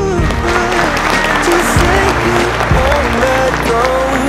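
Guests applauding and cheering, mixed over background music with a held melody line.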